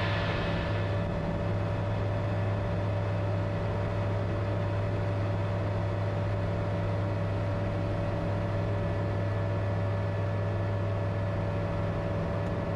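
Comco Ikarus C42C ultralight's engine and propeller running in a steady drone during the climb just after lift-off.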